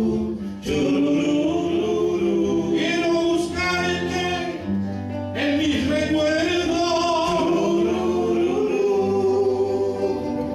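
Several men singing a folk song together in harmony, backed by strummed acoustic guitars.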